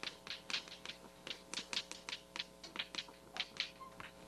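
Chalk writing on a chalkboard: a quick, irregular run of sharp chalk taps and short strokes, several a second.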